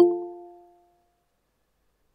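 Google Meet's join-request alert chime: the last of its short electronic notes sounds at the start and rings out, fading away within about a second.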